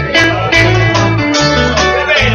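Live band playing an instrumental passage with no singing: plucked guitar notes over steady bass notes and occasional drum hits.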